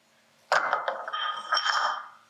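Stainless steel mixing bowl knocked a few times, ringing with several steady high tones.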